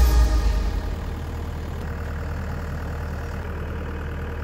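Background music fading out over the first second, leaving a skid steer's diesel engine idling steadily.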